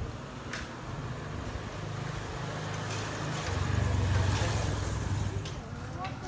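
A motor vehicle's engine passing along the street, its low hum building to its loudest about four seconds in and then easing off.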